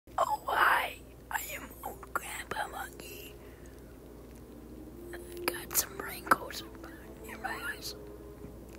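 A person's hushed, whispery breathing and vocal sounds, with a long breathy exhale near the start and shorter breathy sounds after it. A few sharp clicks come later on.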